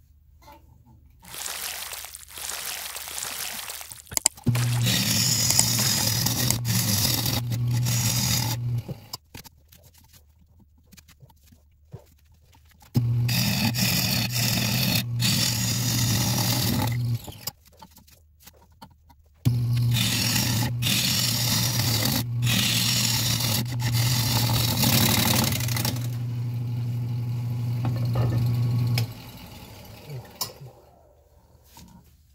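Wood lathe running with a steady motor hum while a gouge cuts the spinning shoestring acacia bowl, giving a loud hiss of shavings. The cutting comes in three stretches, about 4, 4 and 10 seconds long, each starting and stopping abruptly. The bowl is being turned deeper to reach firmer wood under a crumbly bark inclusion.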